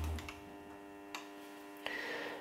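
Faint mechanical ticking from an EMCO V13 lathe's threading dial indicator and carriage being moved, with two light clicks, one about a second in and one near the end, over a steady low hum.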